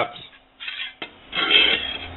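Hand handling a length of aluminium tubing on a textured desk surface: a soft rub, a click about a second in, then a louder stretch of rubbing and scraping near the end.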